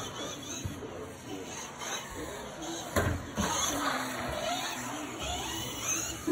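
Indistinct voices in a large echoing room, with a sharp knock about halfway through.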